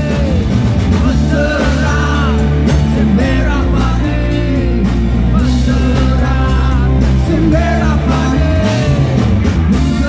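Rock band playing live through a PA: a male singer singing over electric guitars, bass guitar and keytar, with a steady, loud mix.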